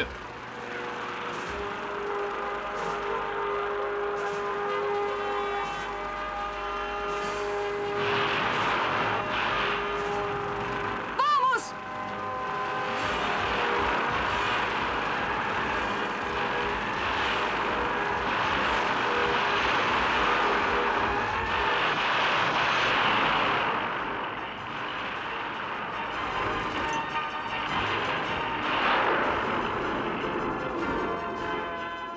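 Cartoon action soundtrack: dramatic music with long held notes, a short loud zapping sound effect with a sweeping pitch about eleven seconds in, then dense noisy sound effects under the music.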